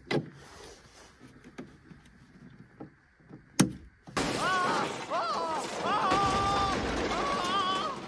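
Light plastic clicks as an electrical panel's hinged breaker cover is lifted and pulled off, with one sharp snap. Then, from about four seconds in, a film's electrocution sound effect: a loud electric crackle and a man's wavering scream.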